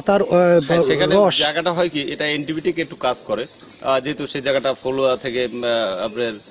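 A steady, high-pitched insect chorus runs continuously under a man talking.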